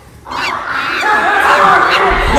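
Loud voices shouting, starting about a quarter second in after a brief quiet moment.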